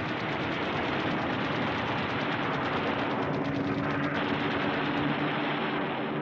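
Machine-gun fire from an attacking aircraft in long, rapid strings over a steady aircraft engine drone. The firing stops about four seconds in and the engine sound carries on.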